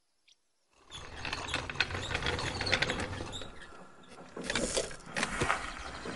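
A gramophone running with a record on its turntable: a scratchy mechanical noise full of small clicks, starting about a second in.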